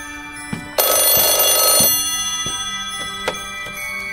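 An old-fashioned telephone bell ringing once, a loud ring about a second long starting about a second in, over soft background music.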